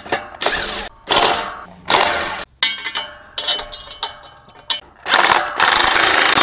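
Cordless impact wrench driving the bolts of an aerator's three-point hitch mast: several short bursts in the first half, then one longer run near the end.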